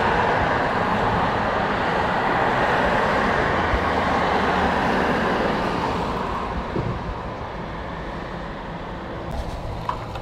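Street traffic noise: a steady rush of passing vehicles that eases off about six seconds in, with a few faint clicks near the end.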